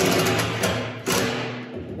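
Cordless impact driver hammering a screw through an air-intake flange into a thin steel drum: a long rapid rattle, a brief stop about a second in, then one short burst that fades away as the screw sucks up tight.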